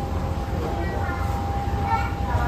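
Steady low rumble of machinery with a constant high whine, heard inside a jet bridge at an aircraft gate, with faint voices in the background.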